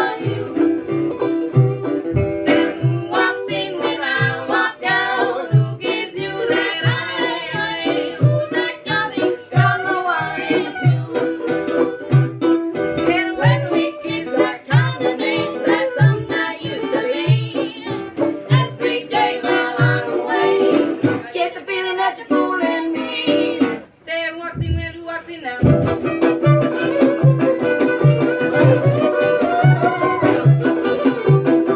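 A string band playing live: banjo, a strummed small-bodied guitar and a washtub bass thumping out a steady beat, with a woman singing. The band drops out briefly about 24 seconds in, then a fiddle carries the melody near the end.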